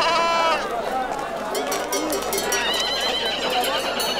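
Busy crowd ambience of many overlapping voices, with a high drawn-out call at the start and livestock calling about three seconds in.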